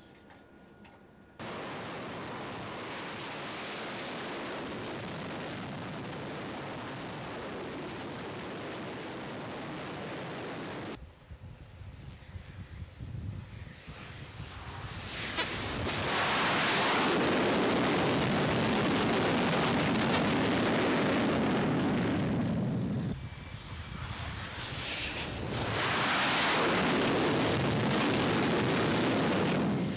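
Jet aircraft engines on an aircraft carrier's flight deck: a steady loud roar cut into several segments, with a high turbine whine heard about midway and again near the end. The loudest stretches come in the second half.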